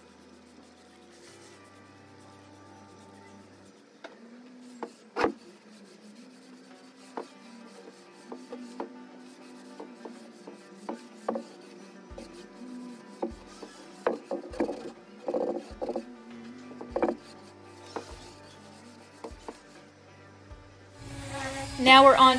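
Damp cloth rubbing over a bare wooden dresser top, wiping off oxalic acid, with scattered small clicks and knocks that grow busier about halfway through, over soft background music.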